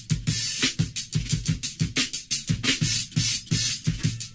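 Instrumental beat built on a sampled drum loop: steady low kick-drum thumps under dense, rapid high cymbal and hi-hat strikes, with no vocals.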